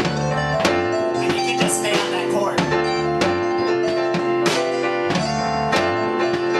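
Live band improvising together on guitar, bass, drums and keyboard, with a steady beat that has a sharp hit about every two-thirds of a second.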